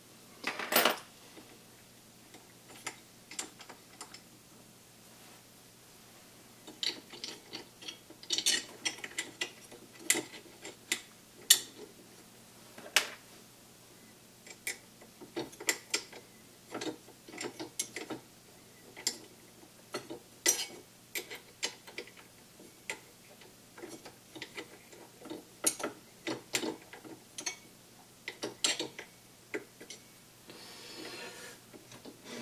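Irregular small metallic clicks and taps of hand assembly on a 3D printer's aluminium frame, as M4 screws and an Allen key are handled and turned. The clicks are sparse at first and come thick and fast from about seven seconds in.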